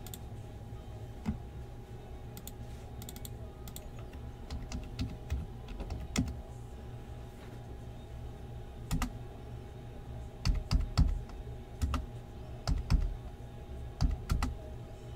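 Typing on a computer keyboard: scattered, irregular keystroke clicks, with a run of louder, heavier strokes in the last few seconds.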